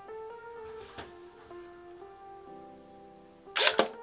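Soft background music with plucked guitar, and near the end a short, loud mechanical clatter lasting under half a second: the Polaroid SX-70 Land Camera firing its shutter.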